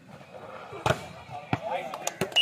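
Volleyball being hit at the net: a sharp slap of hand on ball a little under a second in, then a second, weaker thump of the ball about half a second later, over faint crowd voices.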